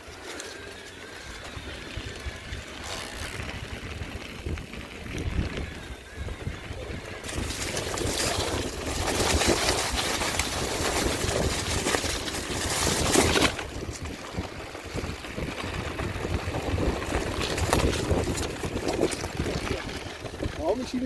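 Mountain bike riding down a dirt trail: tyres rolling over dirt and dry leaves, with the bike rattling and wind rushing over the handlebar microphone. The noise grows much louder for about six seconds in the middle during a fast stretch, then eases off.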